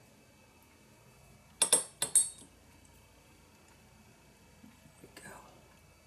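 Three quick, sharp clinks of small hard objects knocking together, about one and a half to two and a half seconds in, followed near the end by a fainter, softer rustle.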